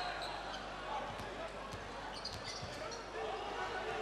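Basketball being dribbled on a hardwood court, a few separate bounces, over the steady background noise of an arena crowd.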